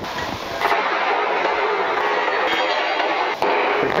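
A power cutting tool cutting through 1¼-inch (32 mm) rectangular steel tube. It gives a steady, harsh hiss that starts under a second in and stops abruptly near the end.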